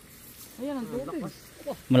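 A man's voice: a short word or two about half a second in, then louder talk starting right at the end.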